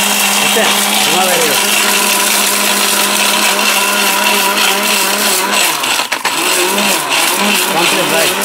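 Orpat mixer grinder's motor running at full speed with a steady hum and high hiss, grinding pieces of brick to powder in its stainless steel jar. The sound dips briefly about six seconds in.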